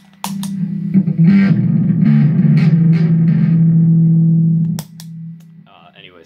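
Electric bass played through a Big Muff distortion pedal, turned up really loud: a few quick fuzzy notes, then one low note held for about three seconds that cuts off abruptly near the end.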